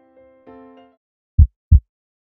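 Soft electric-piano notes fade out, then a heartbeat sound effect begins near the end: one lub-dub pair of deep thumps.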